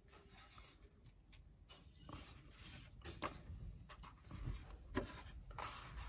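Faint rustling and rubbing of stiff file-folder card as a hanging file folder is laid over and pressed flat by hand onto another, with a few soft taps and light thumps towards the end.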